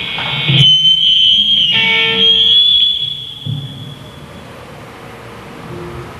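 A live heavy metal band's final note ringing out, with a steady high electric-guitar feedback whine over it. The note dies away about three seconds in.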